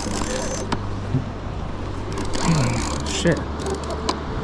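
Baitcasting reel being cranked as a hooked fish is wound up to the surface, over a steady low hum. Short murmured vocal sounds come about halfway through.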